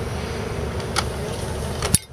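Steady outdoor background noise with a low rumble, broken by a light click about halfway through and a couple more near the end as steel knives are handled.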